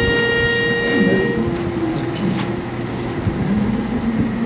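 A pitch pipe sounding one steady, reedy note to give the starting pitch; it stops about a second and a half in. Voices then hum lower held notes, finding their starting pitches.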